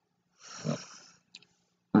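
A woman's short, breathy laugh, about half a second in, followed by a faint click.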